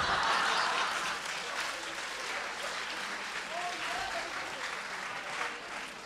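Audience applauding, loudest at the start and slowly dying away, with a few faint voices among the claps.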